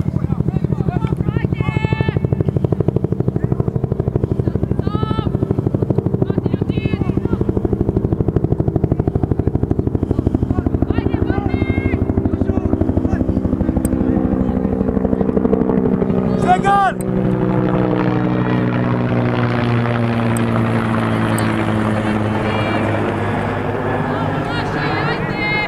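A helicopter flying over, its rotor and engine drone loud and steady, then dropping in pitch as it passes overhead about two-thirds of the way through.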